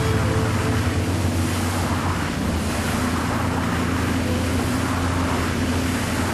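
Fishing charter boat under way at sea: a steady low engine hum under wind and rushing water.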